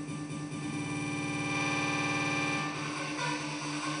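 Electronic dance music build-up from a DJ set: held synth chords over a fast, even pulse, growing louder, then thinning out for the last second or so.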